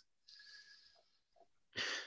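A man's short, audible intake of breath, about three-quarters of the way through, just before he begins to speak. A faint hiss is heard earlier in the pause.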